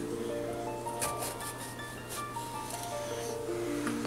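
Soft background music: a slow melody of held notes stepping up and down, with a few faint clicks about a second apart.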